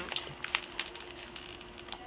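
Plastic snack bag crinkling in a few faint, scattered crackles as both hands strain to pull it open; the sturdy bag does not tear.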